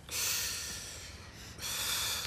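Two loud, breathy breaths of people smoking cigarettes, one just after the start and one near the end.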